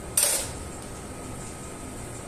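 A short metallic clatter of a surgical instrument set down on or picked up from a steel instrument tray, once, just after the start, followed by steady room hum.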